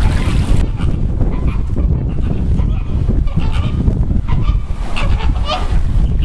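A flock of flamingos honking: several short calls, the clearest about three to five seconds in, over a steady low rumble.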